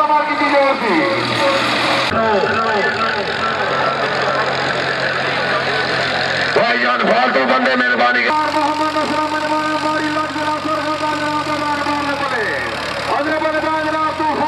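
A voice over an engine running steadily, the sound changing abruptly several times.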